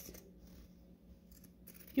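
Pinking shears snipping through sewn cotton fabric, a few faint cuts trimming the curved seam allowance.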